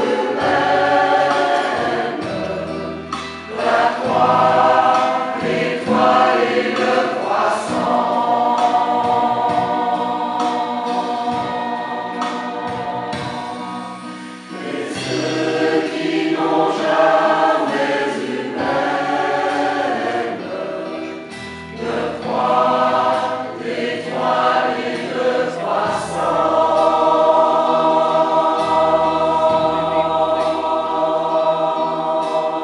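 Mixed choir singing in French with synthesizer accompaniment, the voices moving through phrases with short breaths between them over a sustained low bass.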